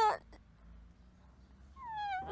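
A boy crying with loud wails. A long wail falling in pitch ends just after the start, and after a short pause another falling wail begins near the end.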